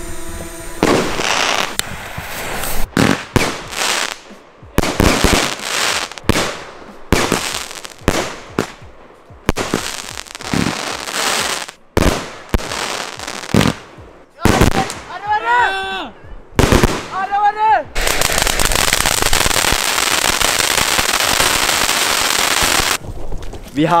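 A consumer firework battery (cake) firing: a rapid string of shots and bursts heard in choppy, cut-up segments, then about five seconds of dense, unbroken noise near the end.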